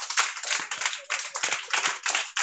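A group of children clapping together, many quick overlapping claps, heard over a video call.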